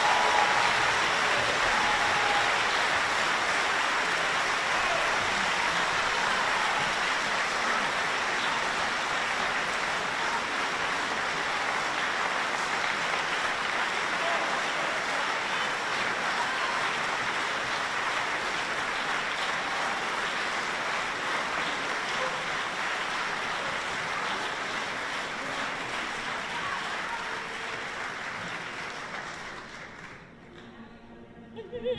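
Theatre audience applauding after an opera duet, the applause slowly dying away and ending just before the music resumes.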